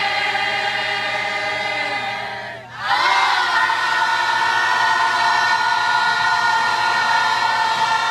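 A large group singing together, holding long sustained notes at full voice. The voices break off briefly about two and a half seconds in, then come back in on one long, loud held chord.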